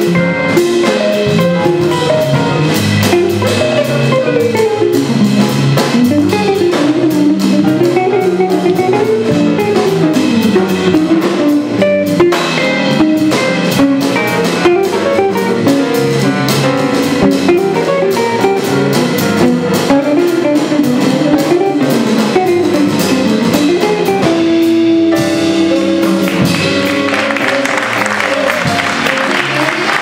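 Live jazz band playing: grand piano, hollow-body electric guitar, electric bass and drum kit, with a busy melodic line moving through the middle register.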